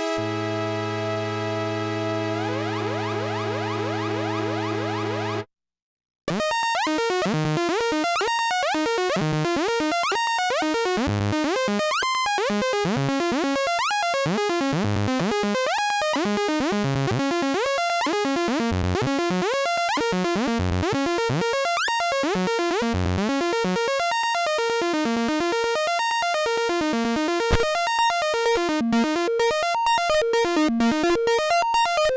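Korg Mono/Poly analog synthesizer playing: a held chord with some pitches gliding upward for about five seconds, then a brief silence, then a fast stream of short notes. Near the end the notes pulse in an even rhythm.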